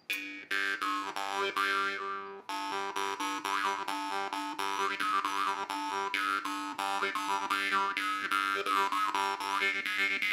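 Sicilian marranzano (jaw harp) by Giuseppe La Rosa, its trigger plucked about three times a second over a steady twanging drone, the overtones sliding up and down as the mouth shapes them, with a short break about two and a half seconds in. A very loud, strong sound.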